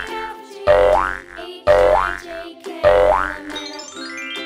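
Bouncy children's background music with a cartoon 'boing' effect about once a second, each a quick upward-sweeping twang over a low thump. A rising run of notes starts near the end.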